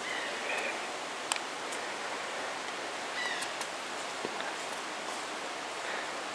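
Steady outdoor background hiss, with a short bird chirp near the start and another brief, falling chirp about three seconds in, plus a few faint clicks.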